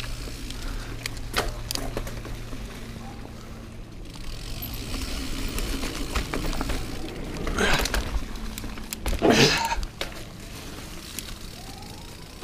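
Niner Jet 9 RDO full-suspension mountain bike rolling along a dirt singletrack: tyre noise with the clatter and clicks of the bike over bumps, a steady low hum in the first few seconds, and two brief louder noises near the end.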